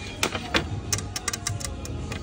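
A series of sharp clicks and taps as hard dry-erase planner boards are handled, knocking against each other and tapped with long fingernails, bunched quickly together around the middle. A steady low hum of store background runs underneath.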